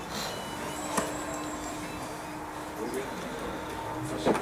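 Outdoor football-pitch ambience with faint, distant voices of players, and one sharp knock about a second in.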